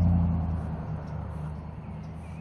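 A low, steady motor hum that fades away over the two seconds, over a faint wash of water noise.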